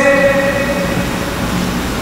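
A man's voice through the mosque's microphone holding a long, flat-pitched hesitation sound, fading out about one and a half seconds in, over a steady low hum from the sound system.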